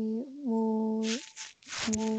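A learner's voice reciting Quranic Arabic slowly in a chant-like reading, holding drawn-out vowels on a steady, level pitch. Two long held notes come first, then hissing 's' sounds about a second in, and another held vowel begins near the end.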